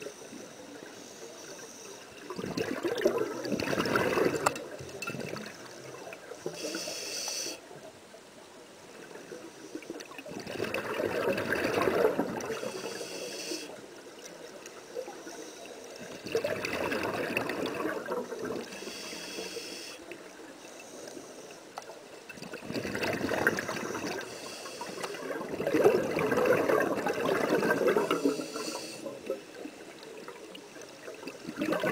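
Scuba regulator exhaust bubbles rumbling past the underwater camera in bursts, one exhaled breath every six or seven seconds. Short hisses from breaths drawn through the regulator fall between them.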